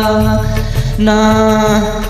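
A man singing a Telugu devotional song over a karaoke backing track. He holds long, steady notes, breaking off briefly about half a second in before taking up the next held note.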